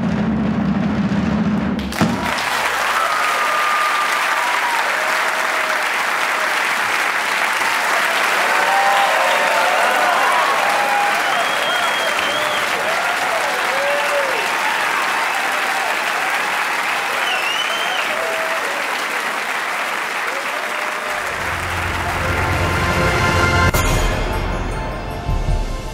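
A drum roll ends in a sharp hit about two seconds in. A large audience then applauds loudly with cheers and whistles. Low closing music comes in under the applause near the end.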